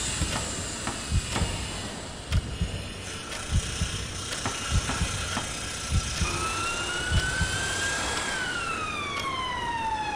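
A siren wailing, starting about six seconds in: its pitch rises slowly, falls over a couple of seconds, then swoops back up near the end. Underneath are a steady background hiss and soft low thumps about once a second.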